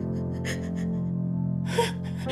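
Soft background score of sustained chords, over a woman's crying gasps: one about half a second in and a louder one near the end.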